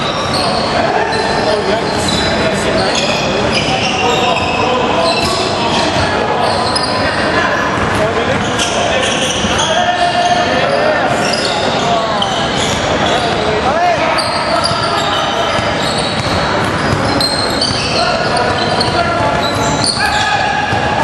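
Indoor basketball game on a hardwood court: the ball bouncing and players' voices calling out, echoing in the large gym.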